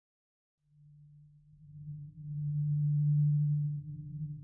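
A low, steady drone tone fades in about half a second in, with a fainter tone an octave above it. It swells louder about two seconds in and holds.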